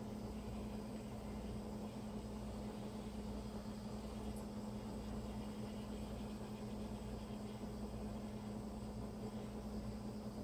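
Small handheld torch hissing steadily as its flame is passed over wet acrylic paint to pop surface air bubbles, over a steady low hum.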